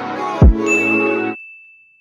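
Intro music with a loud hit that sweeps down in pitch about half a second in, then a single high bell-like ding sound effect that rings on by itself as the music stops, the notification-bell sound of an animated subscribe button.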